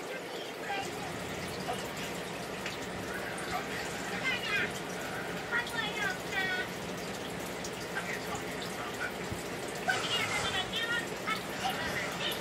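Aquarium water trickling and bubbling steadily in a fish tank, with faint voices in the background.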